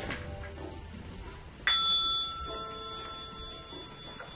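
A bell struck once just under two seconds in, its clear, high ringing tone sustaining and slowly fading.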